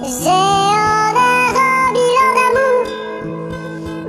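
Sped-up, high-pitched chipmunk-style singing over backing music. The voice drops out near the end, leaving the backing music quieter.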